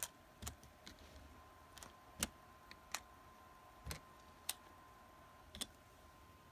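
Small, sharp, irregular clicks and clacks of die-cast toy monster trucks being handled and set down beside one another, about a dozen taps with the loudest about two seconds in. A faint steady high hum runs underneath.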